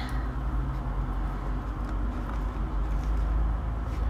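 A steady low background rumble at an even level, with no distinct events standing out.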